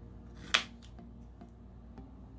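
A plastic scraper card scraped once, quickly, across a metal nail-stamping plate to clear the excess polish, about half a second in, followed by a few faint light ticks.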